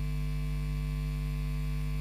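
Steady electrical mains hum, a low drone of several fixed tones that holds unchanged through the pause.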